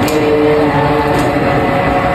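A group of boys and men chanting a noha, a Shia mourning lament, in unison, holding a long note early on.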